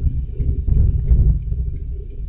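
Low, steady rumble of a manual car's engine and road noise, heard from inside the cabin while the car is driving along.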